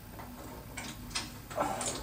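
A few light clicks and knocks of handling, spread through two seconds, with a short faint vocal sound near the end.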